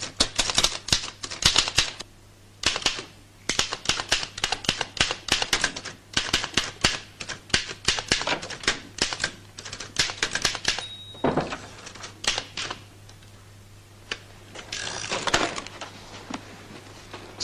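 Manual typewriter typed in quick runs of keystrokes, with a short pause about two seconds in. A little past the middle its bell rings once and the carriage is returned, then typing resumes.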